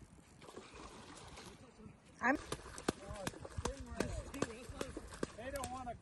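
A sudden high, rising cry about two seconds in, then people talking, with scattered light clicks.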